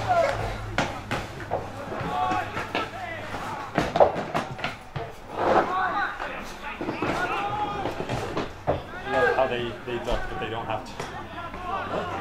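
Indistinct shouts and calls from players and spectators across a grass football pitch, with sharp thuds of the ball being kicked, the loudest about four seconds in.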